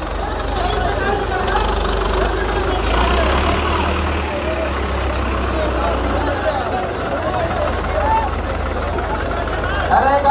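Diesel tractor engines running with a deep steady rumble that strengthens and then drops away about six seconds in, under the chatter of a large crowd. Two short hissing bursts come in the first four seconds.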